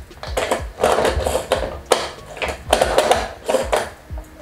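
Hand-powered manual food chopper rattling and whirring in about five short, uneven bursts as its blades spin through chunks of raw vegetables. The chopper is jamming easily on the pieces.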